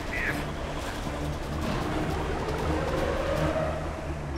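Dramatic background music over a steady rushing-water noise: the cartoon sound effect of a hurricane-force underwater current.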